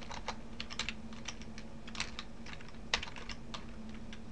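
Typing on a computer keyboard: a quick, irregular run of keystroke clicks over a faint steady hum.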